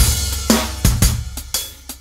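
Instrumental break in a children's song: a few drum kit hits with cymbals over a steady bass, getting quieter near the end.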